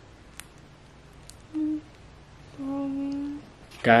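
A woman's two closed-mouth "mm" hums in reply, a short one and then a longer one held on one level pitch, sounded without opening her lips because they are swollen and sore from lip injections.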